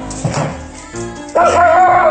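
A dog gives a loud, high, drawn-out yelp that bends in pitch, starting about a second and a half in, over steady background music. A short scuffling noise comes near the start.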